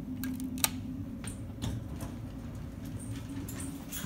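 Elevator hall-call button pressed, then a few sharp clicks and knocks as the car is boarded, over a steady low hum. The loudest click comes about half a second in.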